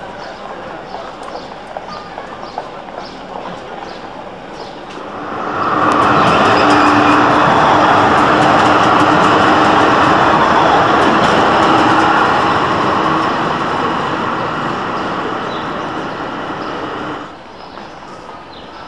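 Tram passing close by: wheels running on the rails with a steady hum, loud from about five seconds in, slowly fading and then cutting off suddenly near the end. Before it, lower street noise with small clicks.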